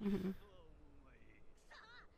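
A laugh trails off, then faint high-pitched cartoon voices from the anime soundtrack, with a yelled line near the end.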